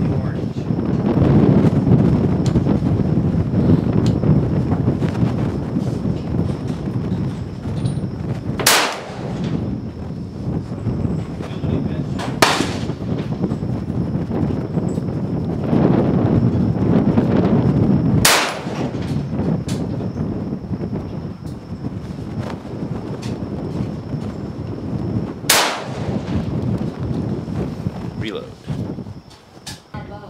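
Four single shots from an AR-15 rifle firing .223 rounds, each a sharp crack, spaced unevenly four to seven seconds apart.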